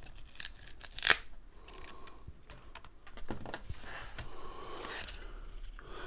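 Close-up handling of a small sticky accessory and paper: scattered light clicks, one sharp click about a second in, then a few seconds of soft rustling as the part is worked between the fingers.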